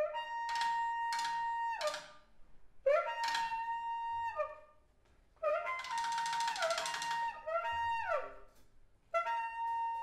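Tenor saxophone in free improvisation, holding long high notes in separate phrases, each bending down in pitch as it ends, with a brief pause near the middle. A rough, buzzing stretch of dense sound comes about six to seven seconds in, with the drum kit playing sparsely underneath.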